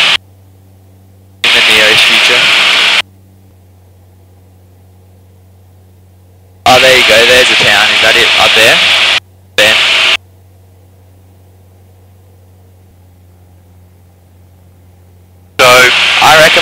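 Light-aircraft intercom or radio audio switching open and shut: short bursts of hiss, the middle one carrying a voice about seven seconds in. Between the bursts only a low steady hum remains, much quieter.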